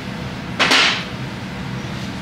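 A single short hissy swish about half a second in, over a steady low hum.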